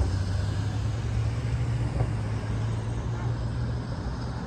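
Steady low hum of a motor vehicle running close by, over city traffic noise. There is a single short click about halfway through.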